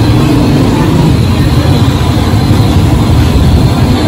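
Jalebis frying in a wide iron karahi of hot oil, a steady hiss, under a loud continuous low rumble.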